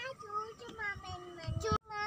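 A young child singing in a high voice, holding short notes, with the sound cutting out for an instant near the end.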